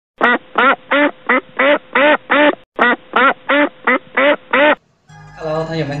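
A duck quacking: two runs of seven short, evenly spaced quacks, about three a second, with a brief break between the runs. Background music and a man's voice start about five seconds in.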